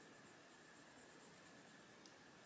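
Very faint soft scratching of a Faber-Castell Polychromos coloured pencil shading lightly on paper, barely above room tone.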